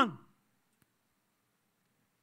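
A man's spoken word ends just after the start, then near silence with one faint click about a second in.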